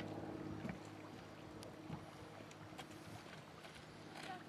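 Faint footsteps on a dirt trail, heard as scattered light clicks and scuffs at irregular intervals, over quiet outdoor ambience with a low steady hum underneath.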